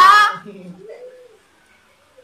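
Young man and young woman laughing loudly with high, shrieking laughs that fade out by about a second and a half in.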